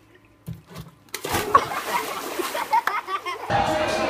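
A splash into a swimming pool with water sloshing and voices shouting, starting a little after a second in; near the end it gives way to music and talk.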